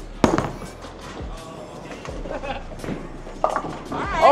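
Bowling ball landing on the lane with a sharp thud about a quarter second in, then rolling down the lane, with scattered knocks of pins being hit later on. Background music and chatter are also present.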